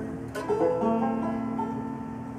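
Acoustic banjo and mandolin strike a final chord about half a second in, which rings on and slowly fades as the song ends.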